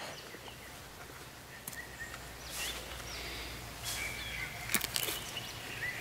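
Faint bird calls over quiet background noise, with a few soft rustles and clicks in the second half.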